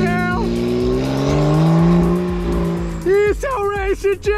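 Porsche 911 Carrera GTS's twin-turbo flat-six accelerating hard from a launch, its pitch rising steadily for about two seconds before fading as the car pulls away. Background music with vocals plays over it.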